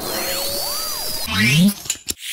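Synthesizer sound-effect break in electronic music: the beat drops out and thin tones arc up and fall back across one another. Steep rising glides come near the end.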